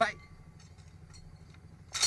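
A small Fiat's engine idling: a faint, low, steady rumble, after a word cut off at the very start.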